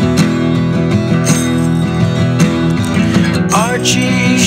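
Acoustic guitar strummed steadily in an instrumental passage of an indie folk song, with a note sliding upward just before the end.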